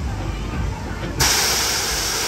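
Fairground ride's compressed-air system letting off a loud hiss that starts suddenly a little past halfway and lasts about a second, over the low rumble of the ride running.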